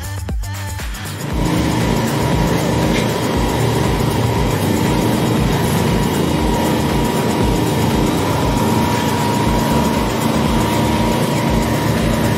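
Electronic dance music with a steady beat; about a second in, a loud steady rushing noise joins it, the sound of several fire hoses spraying water jets at once.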